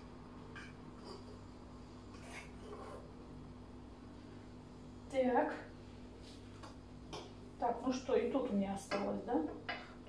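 Fork faintly clicking and scraping against a frying pan as noodles are lifted out, with a woman's voice murmuring briefly about five seconds in and again over the last two seconds, louder than the clicks.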